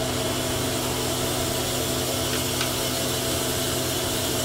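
Steady machinery hum with a broad hiss and a low, even drone, with one faint click about two and a half seconds in.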